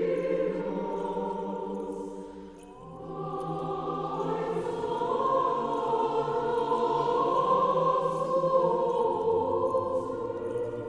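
Choir singing Armenian church chant in long, slow held notes. The singing thins briefly about two and a half seconds in, then swells again.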